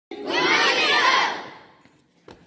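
A crowd of children shouting together, loud at first and fading out after about a second and a half.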